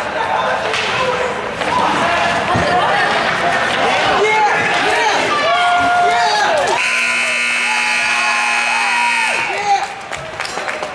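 Spectators shouting and cheering during a scramble at the net, then the rink's horn sounds one steady, buzzing note for about three seconds, starting about seven seconds in.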